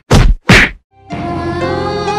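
Two quick loud whacks, the end of a rapid run of blows like a beating done with sound effects. About a second in, music starts with sustained tones.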